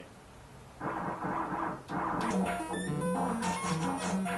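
Modular synthesizer output. A burst of noise starts about a second in, then from about two seconds a run of short electronic notes steps quickly in pitch over a low held tone.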